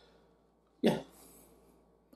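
A man's single short spoken "yeah", otherwise near silence.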